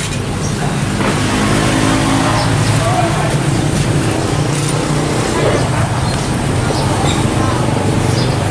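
A motor vehicle's engine running close by, a steady low hum over general traffic noise, with voices in the background.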